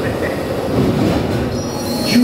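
Indiana Jones Adventure ride vehicle (an Enhanced Motion Vehicle) making its steady running noise, a mechanical rumble with a faint whine.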